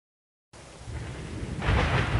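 Thunderstorm sound effect: rain with a low rumble of thunder. It starts abruptly out of silence about half a second in and swells louder shortly before the end.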